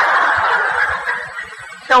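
An audience laughing together, the laughter fading away over about a second and a half.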